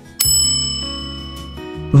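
A news-bulletin transition sting: a single bright, bell-like chime strikes about a quarter second in and rings out, fading gradually over a sustained low chord that shifts near the end.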